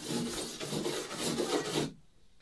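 Stainless steel wire brush scrubbing over varnished wooden canoe planking in quick back-and-forth strokes, lifting off loose, flaking varnish from fine cracks in the grain. The scratching stops suddenly just before the end.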